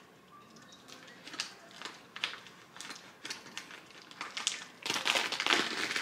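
A mini retractable box cutter slitting the packing tape on a cardboard shipping box: scattered small crackles and scrapes, turning into a louder, denser run of scraping and tearing near the end.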